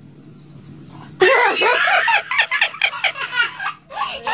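Loud laughter breaking out about a second in, going on as a run of short, uneven bursts until just before the end.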